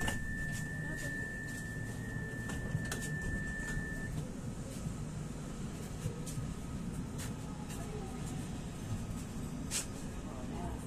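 Pesa Foxtrot tram's door-closing warning: a steady high beep for about four seconds, over the steady low hum of the tram standing at the platform. A sharp click near the end.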